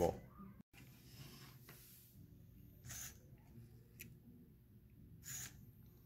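Faint handling of LEGO parts as a minifig is set back on the track, with one small sharp click and two short breaths over a low steady hum.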